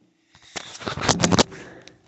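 Phone handling noise: a rustling scrape with a few clicks for about a second as the phone is brought down to the rug.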